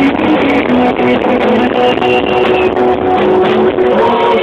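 A rock band playing live, with guitar to the fore.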